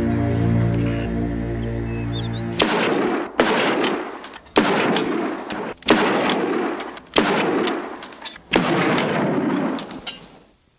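A held musical chord, then a string of about seven gunshots, roughly one every second and a quarter. Each shot has a long noisy tail that dies away before the next.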